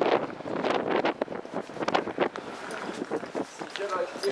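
Gusty wind buffeting the camera microphone, with voices of people in the street.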